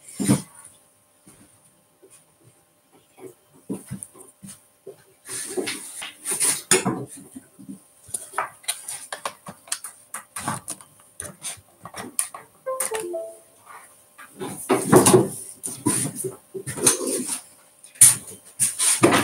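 Scattered clicks, knocks and rattles of equipment being handled while a microphone is plugged in and set up, with a brief squeak about thirteen seconds in.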